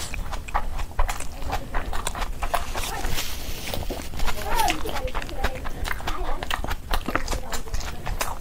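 Close-up eating sounds: wet chewing and lip smacking of chicken curry and rice, a dense run of short, irregular clicks.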